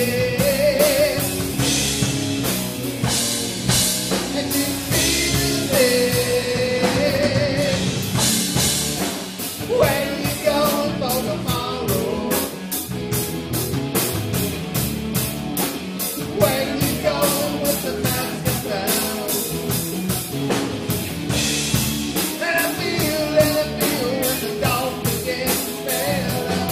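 Live rock band playing: a male lead vocal with held, wavering notes over guitar and a drum kit keeping a steady beat.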